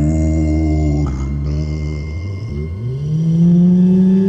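Loud, low horror-soundtrack drone: a deep pitched tone that sinks slightly. About two and a half seconds in, it slides upward into a higher held tone, with a thin hiss above it.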